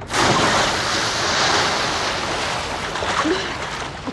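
A person falling from height into a swimming pool: a sudden loud splash, then water churning and sloshing, slowly dying away.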